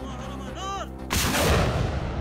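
Truck-mounted multiple rocket launcher firing: a sudden loud blast about a second in, followed by a rumble that fades away.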